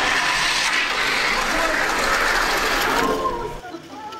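Pinewood Derby cars rolling down an aluminum track: a steady rattling whir of wooden-bodied cars' wheels running on the metal rails, lasting about three seconds and stopping abruptly as the cars reach the end.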